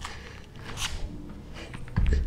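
Faint rustling and shuffling of a person moving on a yoga mat as she bends to the floor and steps a leg back, with a short hissing noise just under a second in.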